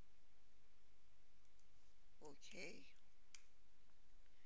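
A single sharp computer mouse click about three seconds in, preceded by a couple of faint ticks, over a low steady room hum. A brief murmur of voice comes just before the click.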